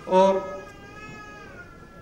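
A man's voice through a public-address microphone says 'aur' and draws it out into a long, wavering hesitation sound, quieter than his speech, before he picks up the sentence again.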